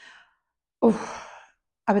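A woman sighs once, a breathy exhale that starts suddenly and fades over about half a second, while she thinks before answering.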